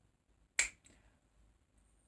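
A single finger snap about half a second in.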